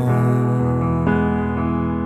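Slow, soft piano chords ringing on, with a new chord struck about a second in.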